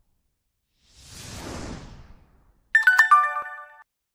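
Animated subscribe-button sound effects: a soft whoosh swells and fades, then near the end come sharp clicks with a short, bright chime of several bell-like notes.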